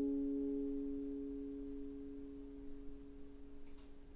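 An acoustic guitar's last chord ringing out and slowly dying away, a few steady low notes fading throughout, with a couple of faint clicks near the end.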